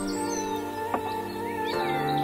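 Instrumental background music: sustained chords that change every second or so, a sharp click about every second and a half, and high chirp-like glides over the top.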